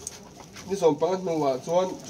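A man's voice speaking after a brief pause near the start.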